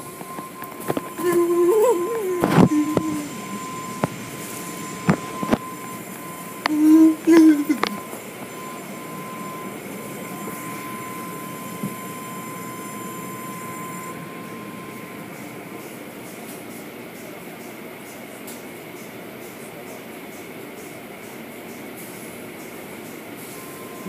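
Automatic tunnel car wash running behind a viewing window: a steady spray and machinery noise. In the first eight seconds there are a few sharp knocks and two short, louder pitched sounds that glide up and down, with a thin steady whine for the first half.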